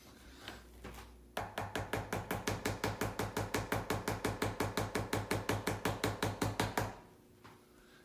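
Plastic oral syringe of liquid medicine being tapped rapidly and evenly, about eight taps a second for roughly five and a half seconds, to knock air bubbles out of the dose.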